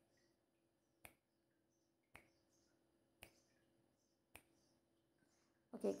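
Countdown timer ticking: a single sharp tick about once a second, five in all, over near silence.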